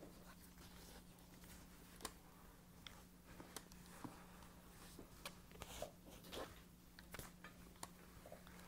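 Flat iron and comb being drawn through short hair: faint, scattered clicks and soft scratchy rustles over a steady low hum.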